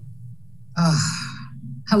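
A woman's audible, breathy sigh lasting about half a second, falling in pitch, just before she starts speaking.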